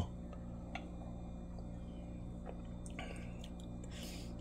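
Quiet room tone: a low steady hum with a few faint, soft clicks.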